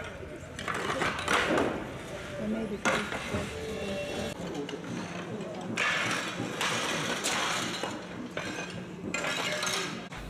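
Old handmade clay roof tiles clinking and scraping as they are lifted and set on the roof battens, with indistinct voices in the background.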